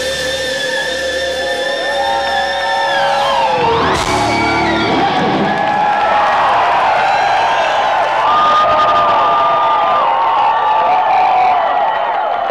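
Live rock band playing, led by sustained electric guitar notes, with a note diving sharply in pitch about four seconds in. The crowd cheers along with the music.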